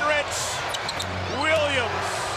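Basketball game sound in a large arena: a steady crowd hubbub and court noise, with a play-by-play commentator's voice calling a corner three-point shot.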